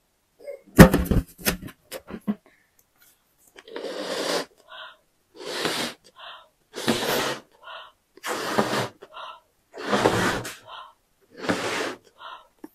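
A person blowing up a balloon by mouth: about six long puffs of breath into it, each followed by a quick breath in, starting a few seconds in. Before that, about a second in, come a few sharp clicks from the balloon being handled.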